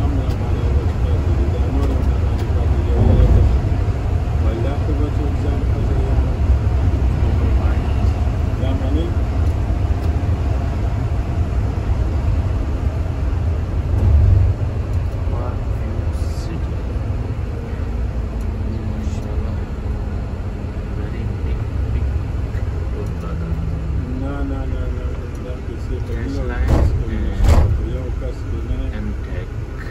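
Steady low rumble of a bus's engine and tyres heard from inside the bus as it drives along a motorway. It eases as the bus slows toward a toll plaza near the end.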